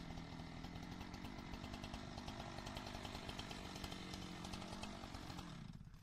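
Chainsaw engine idling steadily after a cut, fading out near the end.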